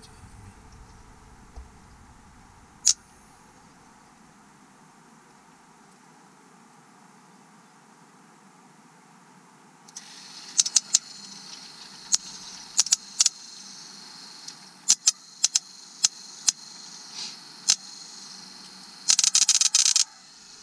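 Sparks from an MSD ignition box snapping across the gap of a spark tester on the coil wire: sharp, irregular cracks starting about halfway through, with a quick rapid run of them near the end, over a steady high whine that starts at the same moment. Each crack is the spark jumping the gap, the sign that the MSD box is working and giving a strong spark.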